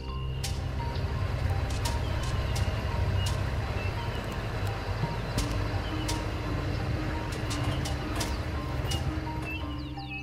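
Open safari game-drive vehicle on the move: a steady low rumble of engine and wind, with frequent sharp knocks and rattles as it jolts along a rough track.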